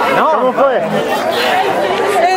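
Excited chatter: several voices talking and exclaiming over one another.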